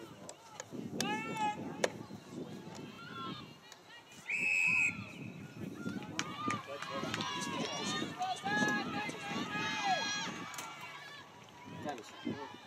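A referee-style whistle blown once, a single steady blast lasting under a second, about four seconds in. High-pitched shouted calls from players and people on the sideline come before and after it.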